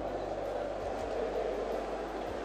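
Steady background noise of a large hall, with a low hum underneath and no distinct event.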